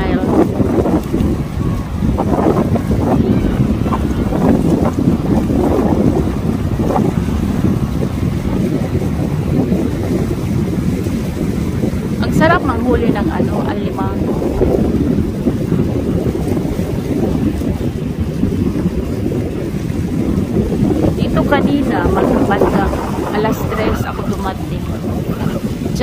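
Wind buffeting the microphone in a steady low rumble, over small waves washing on a rocky shore.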